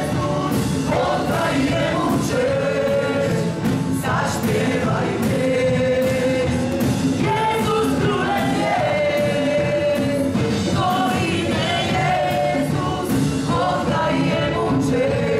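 Live worship band playing a song: a man singing the lead in long held notes over keyboard and a drum kit keeping a steady beat.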